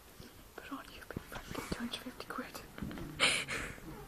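Hushed whispering close to the microphone, with a louder breathy burst about three seconds in.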